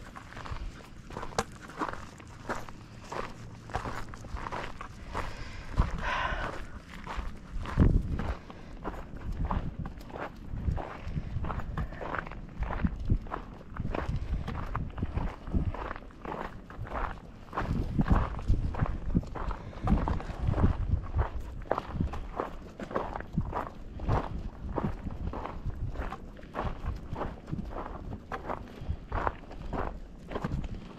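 Footsteps crunching on a loose, rocky gravel trail at a steady walking pace.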